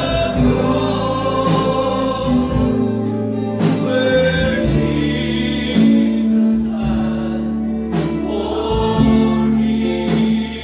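Gospel worship music: a group of voices singing with instrumental accompaniment over long held notes and a recurring percussive beat.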